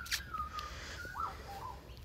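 A bird calling in thin whistled notes: a held note that slides slightly down, a quick rising-and-falling note about a second in, then a short lower note, over a low steady rumble.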